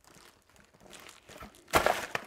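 Packing paper being handled in a cardboard box: faint rustling, then a louder burst of paper crinkling near the end.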